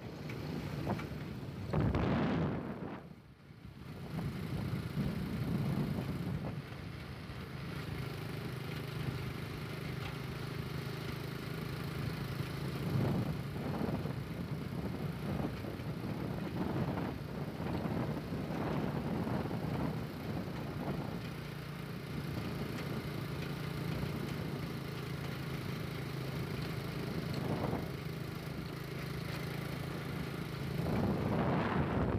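A motor vehicle's engine running at a steady cruising speed, a constant low hum, with wind gusting on the microphone now and then.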